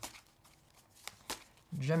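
A deck of tarot cards being handled, with a few light, sharp card snaps as cards are pulled from the deck.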